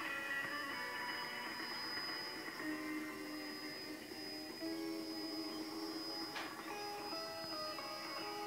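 Pop music received on shortwave, playing through the loudspeaker of an Eddystone Model 1001 communications receiver, with a steady high whistle over it. A brief click comes about six seconds in.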